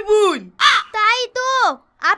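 People shouting and crying out without words: several harsh, drawn-out vocal cries, most of them falling steeply in pitch, one short and shrill.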